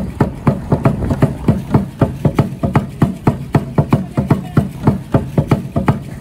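Street drum on a stand beaten with two sticks in a fast, steady Aztec-style dance rhythm, about five or six strikes a second.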